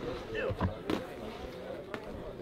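Boxing-glove punches landing: a few sharp smacks, two close together about half a second to a second in and one more near the end, under men's voices calling out.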